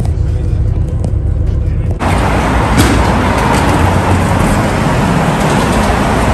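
Steady low rumble of an idling shuttle bus. About two seconds in it gives way suddenly to a fuller din of traffic and bustle, with scattered clicks, as vehicles pass along an airport curb.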